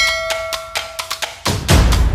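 Percussive outro music with a steady beat. A bright bell-like ding, typical of an animated subscribe-button effect, rings over it for about a second at the start. The deep bass drops out and comes back about a second and a half in.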